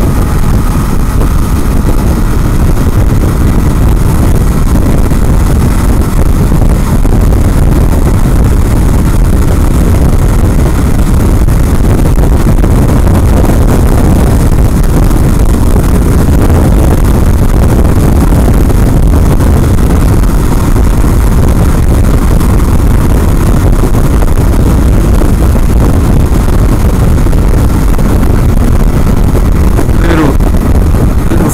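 Loud, steady wind buffeting on the microphone from a Kawasaki KLR650 motorcycle riding at freeway speed, with the bike's engine running underneath.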